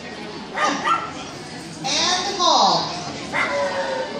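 A dog giving a few yelping barks, the longest one about two seconds in, rising and then falling in pitch, over a murmur of voices.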